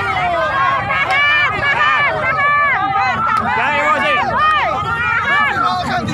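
A crowd of demonstrators shouting and yelling over one another, several raised voices at once with no clear words.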